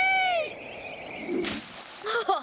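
A cartoon character's high held cry, bending down and ending about half a second in. It is followed by a quieter stretch with a soft thump about a second and a half in as the falling clay dinosaur lands in a bird's claw.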